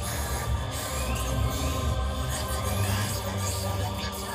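Loud live concert music over the venue PA, heard from within the audience, with a heavy, steady bass underneath.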